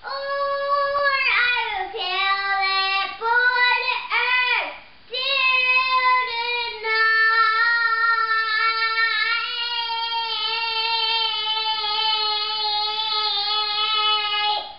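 A young boy singing in a high voice: a few short phrases, then one long held note from about five seconds in that carries on to the end.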